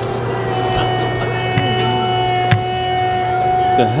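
A steady drone of several held tones over a low hum, odd enough to prompt "the heck is that noise". One sharp click sounds about two and a half seconds in.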